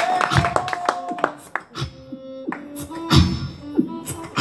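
Live beatboxing through a microphone, with mouth-made kick-drum thumps and sharp snare-like clicks. A violin holds one long note for about the first second.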